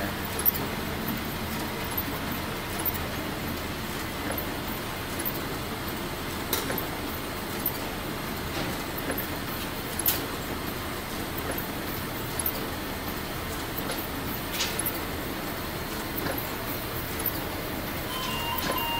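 Two-color offset printing press running with its inking rollers turning: a steady mechanical noise, broken by a few sharp clicks.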